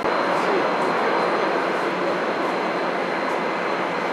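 Twin-engine jet airliner rolling along the runway with its engines at high power: a steady, loud rushing noise.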